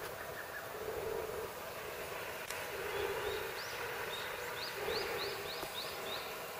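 A bird calling a run of short rising high notes, about three a second, through the second half, over a steady outdoor hiss.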